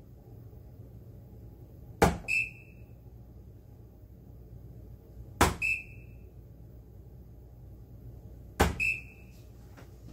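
Three soft-tip darts hit a Granboard electronic dartboard, about three seconds apart. Each sharp thud is followed a moment later by a short electronic beep as the board's app registers the hit, each dart scoring a single 20.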